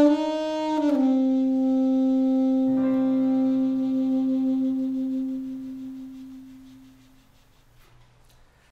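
Alto saxophone ending a phrase with a few quick notes, then holding one long note that slowly fades away by about seven seconds in. A lower accompaniment chord sounds under the held note from about three seconds in.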